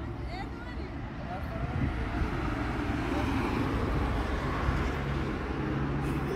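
Road traffic noise from a busy street, a steady rush that swells about two seconds in as vehicles pass, with faint, indistinct voices early on.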